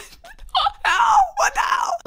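A young woman laughing, two short laughs with falling pitch.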